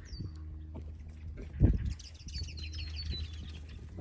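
Wild bird calling: a short falling whistle near the start, then a quick run of high chirps about two seconds in, over a steady low rumble. A single low thump, the loudest sound, comes about one and a half seconds in.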